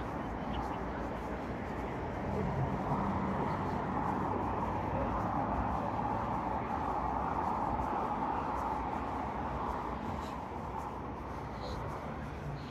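Steady drone of a diesel bus engine idling, swelling a little for most of the stretch and easing again near the end.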